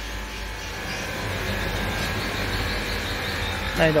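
Steady low rumble of background motor noise, growing slightly about a second in.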